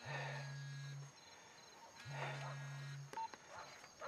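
A person snoring in bed: two snores, each a low buzz about a second long, about two seconds apart.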